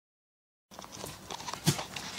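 After a short silence, rustling and small clicks of a phone being handled and set in position, with one sharper click near the end.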